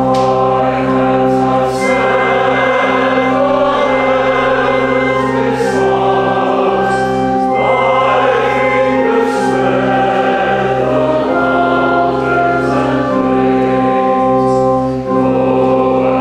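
A choir singing a slow sacred piece, voices holding long notes over steady sustained low notes underneath.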